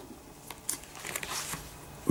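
Plastic sleeves on laserdisc jackets crinkling as they are handled and shifted, a few short soft crackles.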